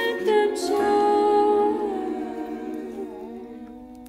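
High school virtual choir holding a long chord without accompaniment. The chord slowly fades over the last couple of seconds.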